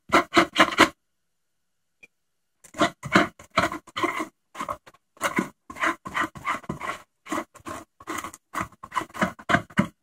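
A glue brush spreading DAP contact cement over foam in quick scrubbing strokes, about three a second. The strokes pause for nearly two seconds about a second in.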